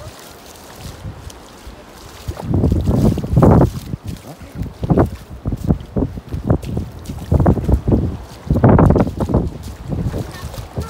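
Wind buffeting the microphone in irregular gusts, the loudest about two and a half seconds in and again near the end, over the sound of feet splashing through ankle-deep seawater.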